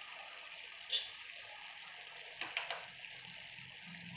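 Mutton pieces sizzling faintly in an open pressure cooker, a steady soft hiss, with one sharp scrape about a second in and a couple of light clicks about two and a half seconds in.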